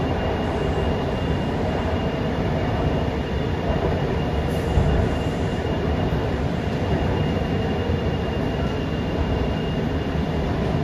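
Mumbai Metro MRS-1 train (BEML stock) running steadily, heard from inside the passenger car: an even rumble of wheels on track, with a faint constant high-pitched whine.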